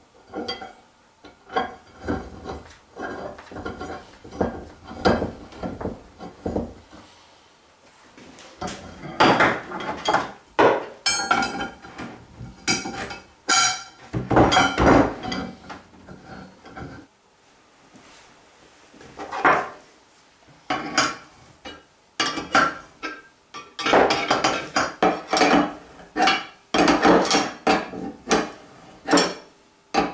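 Steel tubes and rectangular steel frame rails clanking and knocking against each other and the workbench as a round alignment bar is fitted through the rails' axle slots and bolted, each knock ringing briefly. The knocks come in busy runs with a couple of quieter pauses.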